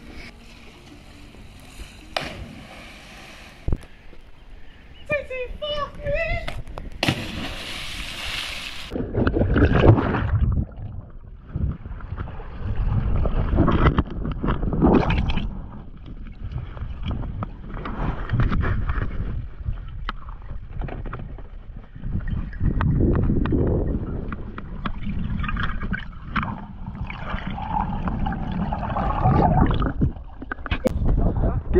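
A splash into the sea about seven seconds in. After it comes a long stretch of water gurgling, sloshing and bubbling around a camera that is underwater and then at the surface, heavy and low with many small crackles.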